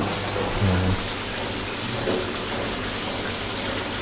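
Water pouring steadily from three waterfall spouts into a koi pond, a continuous splashing rush, with the pond's pump-driven circulation running.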